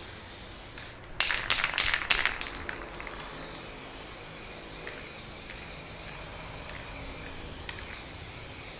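Aerosol spray-paint can hissing steadily as paint is sprayed onto a plywood panel. A quick run of sharp clicks and rattles comes about a second in.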